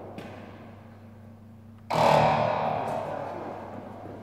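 Background rock music with a loud distorted electric-guitar chord struck about two seconds in and left ringing, fading away.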